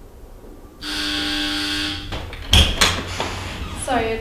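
A door opening: a steady buzzing tone for about a second, then two sharp clunks about a third of a second apart.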